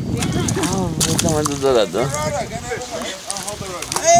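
Excited voices calling out over a fish just landed, without clear words.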